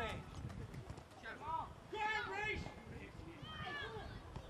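Voices calling out across a football pitch during open play: a few short, separate shouts, over a low background rumble.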